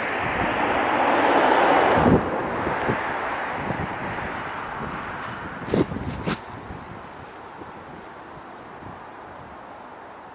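A car driving past: road noise that swells, is loudest about two seconds in, then fades away over several seconds. Two short clicks come about six seconds in.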